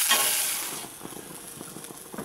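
Chopped onions sizzling in smoking-hot olive oil in a cast iron frying pan as they are stirred. The sizzle stops abruptly less than a second in, leaving a quiet background with a few faint ticks.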